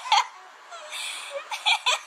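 A baby giggling: a short high-pitched squeal at the start, a breathy stretch, then a quick run of short laughing bursts near the end.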